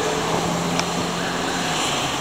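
Street traffic noise: a steady low vehicle-engine hum over a wash of background noise, the hum dropping out near the end, with one brief click around the middle.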